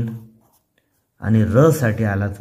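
A voice speaking, broken by a short silence about half a second in, with a pencil scratching on paper as digits are written.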